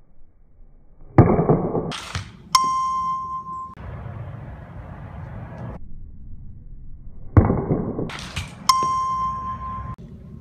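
Softball bat striking a ball off a tee, followed by a swing-sensor app's electronic sounds: a rising whoosh and a bell-like chime held at one pitch for about a second. The whole sequence happens twice, about six seconds apart.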